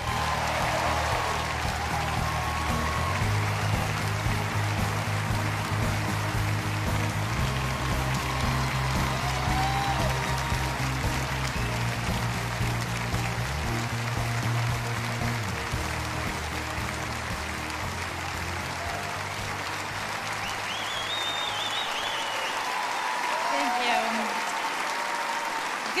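Large audience applauding and cheering while walk-on music with a low, stepping bass line plays; the bass fades out about three-quarters of the way through as the applause carries on.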